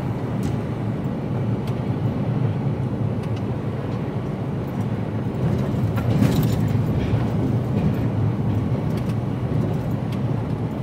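Steady low drone of an HGV container lorry's engine and tyres on the road, heard from the cab, with a brief louder swell about six seconds in and a few light clicks.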